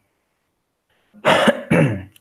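A man coughs twice in quick succession, starting about a second in.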